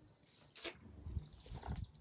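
A man drinking coffee from a cup: a short sharp sip about half a second in, then soft low swallows.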